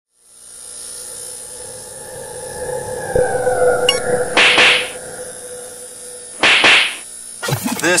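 Sound effects for an animated logo intro: held synthetic tones, one sliding slowly down, a sharp hit about three seconds in, then two whooshes.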